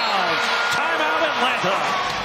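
Basketball arena game sound: steady crowd noise with a basketball bouncing and sneakers squeaking on the hardwood court.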